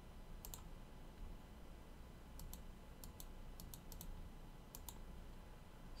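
Faint clicks of a computer mouse button, about ten in all, several coming in quick pairs, over a low steady room hum.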